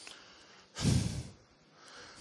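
A man's short, noisy breath close to a handheld microphone, about a second in, during a pause in his speech.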